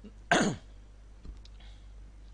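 A man clears his throat once into a close microphone, a short loud burst that falls in pitch, about a third of a second in; a few faint clicks follow.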